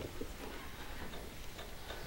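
A few faint, irregular clicks and soft handling noises from papers being handled on a lectern, over room tone.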